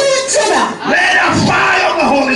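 A man shouting through a microphone and PA loudspeakers, his voice swinging up and down in pitch with one long shout about a second in, over a crowd of voices.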